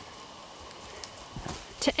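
Quiet woodland background with a couple of faint footsteps on dry leaf litter about a second in.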